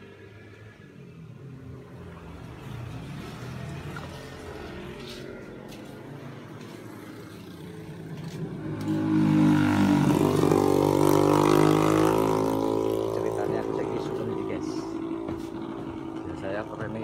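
A motor vehicle's engine going past: faint at first, it grows sharply louder about nine seconds in, stays loud for a few seconds, then slowly fades.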